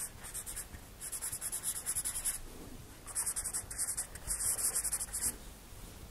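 Pen strokes scratching across a writing surface, in four bursts of quick strokes with short pauses between them.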